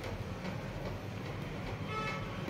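A steady low hum with a background hiss and no distinct event; a few faint thin tones come in near the end.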